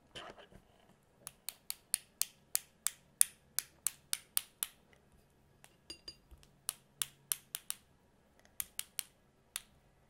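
A watercolour paintbrush tapped sharply and evenly, about four taps a second, in a long run and then two shorter runs. Around the middle there is a short cluster of clicks with a faint ring.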